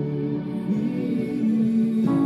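Yamaha digital piano playing slow, sustained chords, with the notes changing twice partway through.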